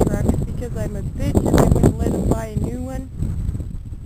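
Indistinct voices talking over wind buffeting the microphone.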